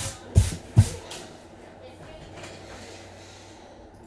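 Two dull thumps about half a second apart near the start as cardboard trading-card hobby boxes are set down and nudged into place on a rubber table mat, followed by quiet room tone.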